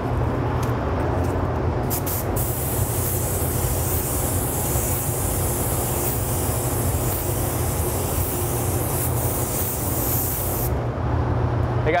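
Gravity-feed spray gun hissing as it lays down a coat of white sealer, starting about two seconds in and cutting off sharply near the end, over the steady hum of the running spray booth's ventilation.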